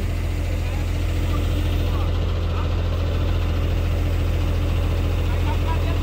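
Truck diesel engine running steadily, a low even drone, as it drives the hydraulics of a truck-mounted Munck knuckle-boom crane lowering a precast concrete pillar.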